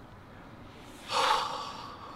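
A man's sharp gasp of shock, once, about a second in, through a hand clapped over his mouth.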